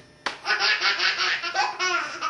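Baby belly-laughing in a quick run of short pulses, then a longer laugh near the end. It follows a brief sharp rip just after the start, from the envelope paper being torn.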